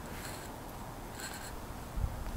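A quiet pause: low steady background hiss with two faint, brief rustles.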